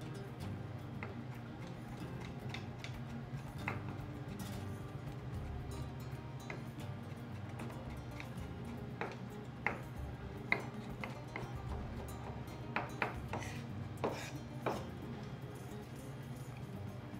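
Chef's knife dicing tomatoes on a wooden cutting board: scattered sharp taps of the blade on the board, coming more often in the second half, over steady background music.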